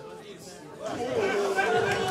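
Low crowd chatter, then about a second in loud, excited shouting from voices in the room.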